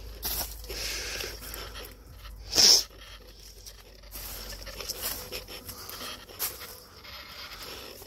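Footsteps crunching and rustling through dry fallen leaves, irregular and uneven. About two and a half seconds in comes one brief, louder puff of breath close to the microphone.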